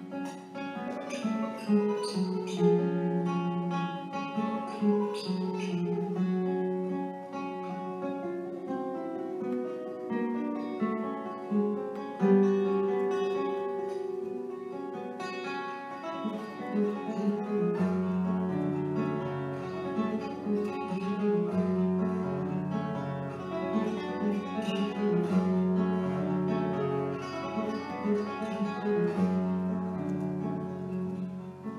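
Solo classical guitar played fingerstyle: a plucked melody over a moving bass line, with deeper bass notes coming in a little past the halfway point.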